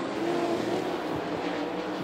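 Winged sprint car V8 engines running at race speed on a dirt oval, a steady drone with a faint wavering engine tone.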